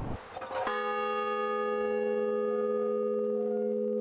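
A large bell struck once, about a second in, then ringing on steadily with several tones sounding together.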